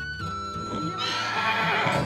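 A horse whinnying over background music, loudest in the second half.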